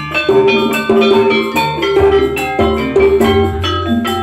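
Javanese campursari ensemble playing a gending: struck metallophone notes ring out in a steady pattern over drums and a bass line.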